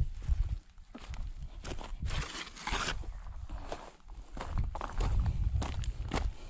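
Footsteps crunching irregularly over loose stones and gravel, with the rustle of a handful of plastic bags and paper plates being carried.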